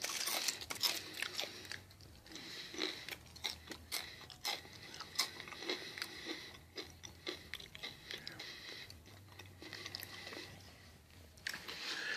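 Crunching and chewing kettle-cooked potato chips: a run of irregular crisp cracks from the mouth, thinning out near the end.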